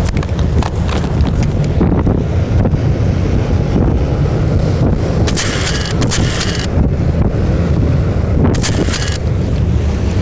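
A small boat under way at speed through chop, its engine and hull rumbling under heavy wind buffeting on the microphone. Two bursts of hiss come through, one about five and a half seconds in and a shorter one near the end.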